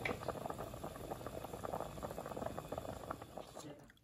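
Fish steaks boiling in broth in a metal pot, the liquid bubbling and crackling at a steady rolling boil. The bubbling drops away near the end.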